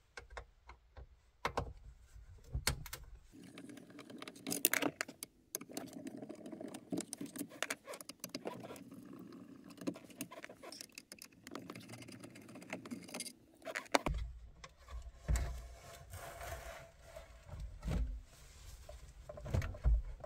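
A screwdriver makes small irregular clicks, taps and scrapes as it backs out the mounting screws of a car radio in the dashboard. From a little past the middle, low bumps and rattles follow as the radio unit is worked loose and slid out of the dash.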